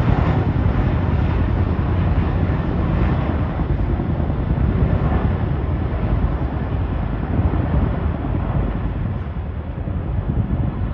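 Three tandem-rotor CH-47 Chinook helicopters passing overhead: a steady low rotor rumble that eases slightly near the end.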